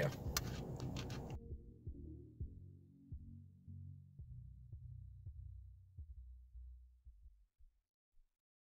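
Deep, muffled thumps over a low hum, like a slow heartbeat, fading out near the end: the bass of an outro sting.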